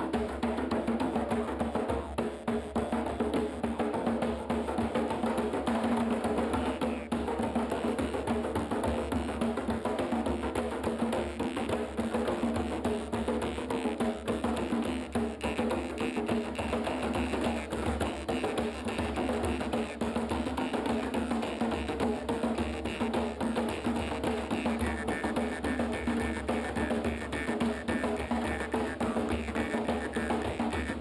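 A drum ensemble playing hand drums, a djembe among them, in a dense, unbroken rhythm of struck skins.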